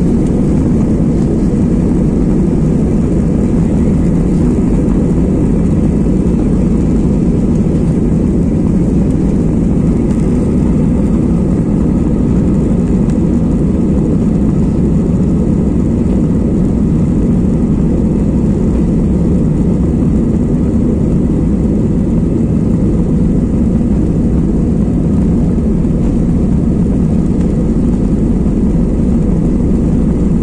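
Jet airliner cabin noise while the aircraft taxis on the ground: a steady, even low rumble from the idling engines and airframe, with no spool-up to takeoff power.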